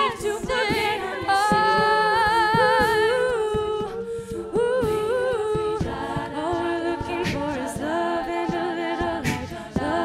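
Female a cappella ensemble singing close harmony, the voices holding chords with vibrato and moving to new chords every second or so, with a few sharp vocal-percussion hits in the second half.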